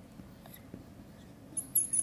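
Chalk writing on a blackboard: a few faint scratches and taps, then short, high-pitched chalk squeaks near the end.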